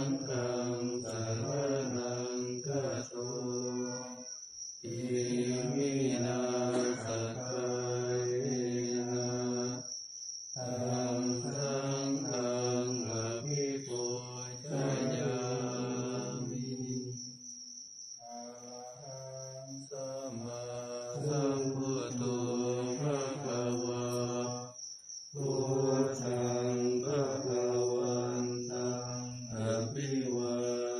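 Buddhist monastic morning chanting in Pali, a steady, near-monotone recitation in long phrases. The phrases are broken by short breath pauses every six or seven seconds.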